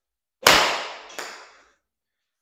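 A full pitching-wedge swing: the club strikes the golf ball off a hitting mat with one sharp, loud crack about half a second in, fading over about a second. A second, fainter knock follows a little over a second in.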